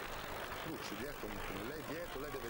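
Sports-hall ambience: a steady crowd murmur, with a faint voice talking underneath from about half a second in.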